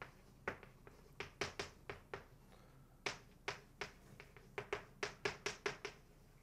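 Chalk on a blackboard as a line of writing goes up: an uneven run of sharp taps and clicks, several a second. There is a short pause a little after two seconds, and the taps come thickest near the end.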